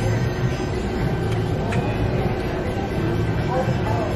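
Steady outdoor background din with a constant low hum, even in level, with no single sound standing out.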